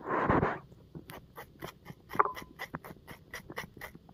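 Metal spoon scraping the flesh of a green banana in quick, even strokes, about four a second, shredding it for soup. A short loud breathy burst comes right at the start, and one sharper, briefly pitched scrape about two seconds in.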